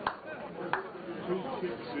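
Two sharp knocks about three-quarters of a second apart, over the voices of people talking.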